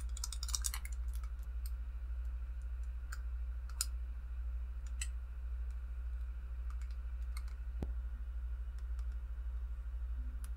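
Scattered light clicks and taps from a sixth-scale diecast action figure and its plastic armour parts being handled, a cluster in the first second and single clicks after that, over a steady low hum.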